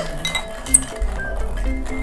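Spoons and ping-pong balls clinking against ceramic bowls in a mouth-held spoon game, with one sharp clink about three-quarters of a second in, over steady background music.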